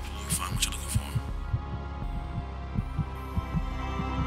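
Film soundtrack: a steady low hum under soft low thumps repeating about three to four times a second, with a brief breathy voice-like sound in the first second.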